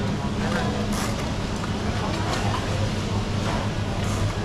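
Supermarket ambience: a steady low hum from refrigerated display cases and store ventilation, with faint background voices.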